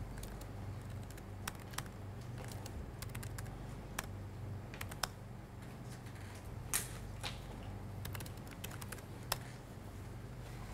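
Typing on a computer keyboard: scattered, irregular keystrokes entering short shell commands, over a low steady room hum.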